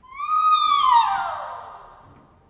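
Operatic soprano's cry "Ahi!", a feigned shriek of sharp pain: one long high note that rises briefly, then slides down in pitch over nearly two seconds as it fades.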